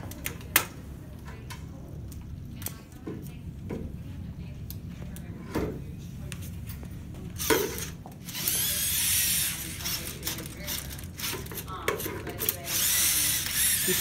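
VEX competition robot's electric motors and gear trains whirring as it tilts up its cube stack and drives, loud from about eight and a half seconds in and again near the end. Before that, a few sharp clicks and knocks over a low hum.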